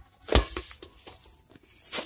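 A single heavy thump followed by a brief rustling hiss, then a sharper click near the end: handling noise on a phone's microphone as it is swung around.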